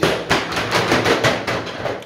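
Plastic accordion shower door being pulled open along its track, its folding panels clicking in a rapid run that stops near the end.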